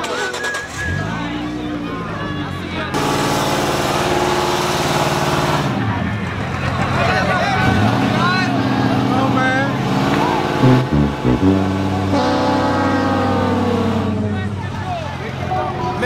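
Vehicle engine revving and settling several times, its pitch holding and then falling away, with crowd voices talking and shouting over it.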